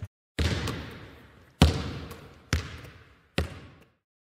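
A basketball bouncing on a hard court four times, about a second apart, each bounce followed by a short echo.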